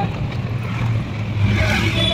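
Road and traffic noise heard from inside a moving open-sided rickshaw: a steady low hum under a continuous rushing noise.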